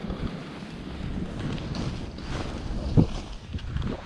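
Skis sliding through fresh powder snow during a descent, with wind buffeting the camera's microphone. A single sharp thump about three seconds in.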